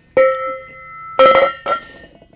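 Galvanized steel trailer-tongue tube knocked three times as it is handled, each knock ringing on with a clear metallic tone that slowly fades.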